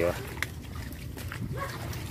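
A short pitched call right at the start and another brief one about one and a half seconds in, over rustling and a few sharp clicks of coconut palm fronds brushing the handheld microphone, with a steady low rumble beneath.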